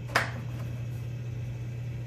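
A single sharp knock from a hard plastic tool carrying case being set aside, just after the start, over a steady low hum.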